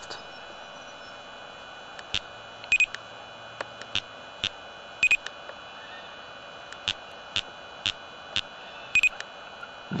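Laser speed gun (LTI UltraLyte) beeping as it is fired: three short double beeps, about three, five and nine seconds in, among scattered sharp clicks over a steady hiss.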